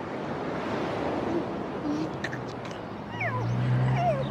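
Steady surf and wind noise. In the last second come a few short seagull calls that fall in pitch, over the low hum of an approaching car engine.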